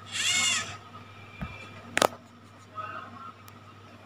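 Steering servo of an MN86KS RC crawler whirring briefly as it turns the front wheels, its pitch rising then falling. A single sharp click follows about two seconds in.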